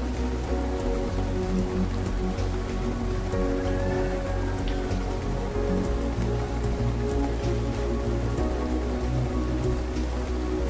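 Steady rain falling, with a soft haze of drops and scattered ticks. Under it runs slow, calm music of long held low notes.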